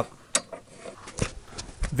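A few light clicks and knocks from an articulating swing-arm TV wall mount as it is folded back flat against the wall.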